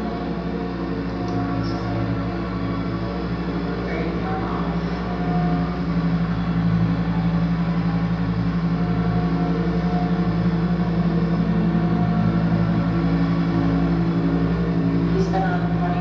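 Live electronic drone played through a PA speaker: a dense, steady hum of held low tones layered together, swelling slightly louder about five seconds in.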